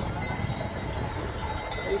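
Low, steady rumble of wind on the microphone from a motorcycle riding slowly past a herd of cattle, with a few faint metallic clinks of cattle bells.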